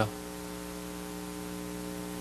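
Steady electrical mains hum with a faint hiss.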